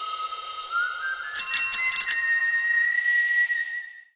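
End-card logo sting: a held synthetic tone over a soft hiss that steps up in pitch, with a quick run of five or six bright bell-like chimes about one and a half seconds in. It fades out at the end.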